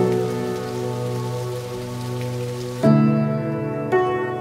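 A rocky stream rushing and splashing over boulders, heard as a steady hiss under background music; the water sound stops abruptly about three seconds in, leaving the music alone.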